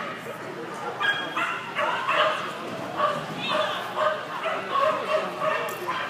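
A dog barking in a rapid string of short barks, about two a second, starting about a second in: excited barking during an agility run.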